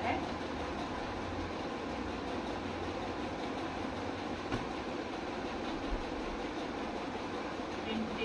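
Steady background noise, a low hum under an even hiss, with a couple of faint taps about four and a half and six seconds in.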